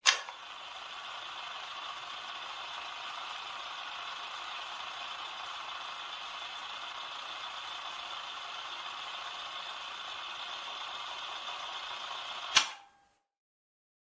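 A sharp click, then a steady hiss of noise for about twelve seconds, cut off by another click, after which it goes silent.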